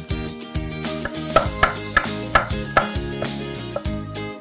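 Chef's knife chopping bell peppers on a wooden cutting board, about six quick strikes in the middle, over background guitar music.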